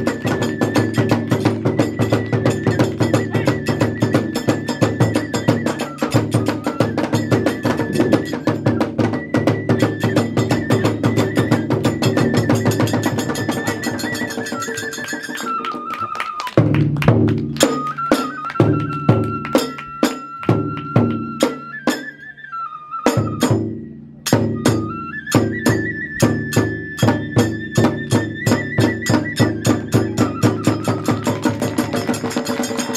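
Live Hiroshima kagura accompaniment: a bamboo flute holds a high melody over a fast, driving beat of the large barrel drum and hand cymbals. About halfway the rhythm slows to sparser strokes with two short breaks, then returns to a fast beat in the last five seconds.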